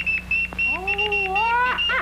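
A high-pitched alarm-like beeping tone from a vintage cartoon soundtrack, broken off several times a second. A wavering pitched sound rises and then falls in the middle, over a low steady hum.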